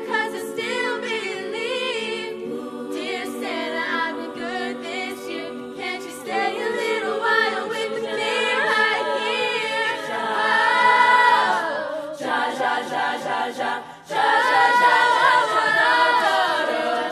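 Girls' a cappella vocal group singing in harmony without instruments: held chords under a moving melody line. The voices cut off briefly about two seconds before the end, then come back in fuller and louder.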